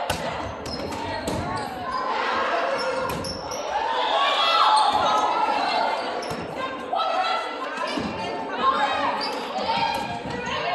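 Indoor volleyball rally in a gymnasium: the ball is slapped on a jump serve at the start and hit back and forth, with a sharp hit near the end the loudest. Players' high voices call and shout throughout.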